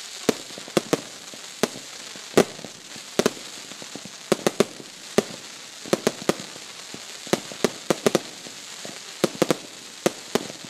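Fireworks display going off: some twenty sharp bangs of bursting shells and comets at uneven intervals, several in quick clusters, over a steady crackling hiss.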